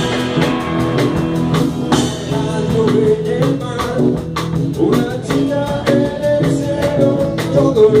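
Live rock band playing an instrumental passage: electric guitar lines over bass guitar and a drum kit with regular drum hits.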